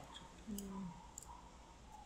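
A few faint, scattered clicks, as of a computer mouse being clicked at a desk, with one brief low vocal sound about half a second in.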